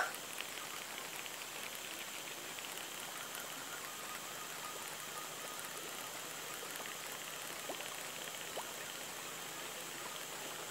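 Faint, steady outdoor hiss with no clear event, and two small faint ticks near the end.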